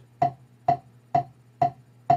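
Wooden drumsticks tapping a rubber practice pad: four single strokes, evenly spaced at about two a second, each a short sharp tap, played relaxed by merely turning the wrist.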